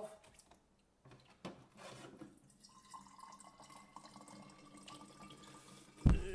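Filtered water running faintly from the LifeSaver Jerrycan's tap into a glass bottle. From about two and a half seconds in, a thin ringing tone from the bottle creeps slightly higher as it fills.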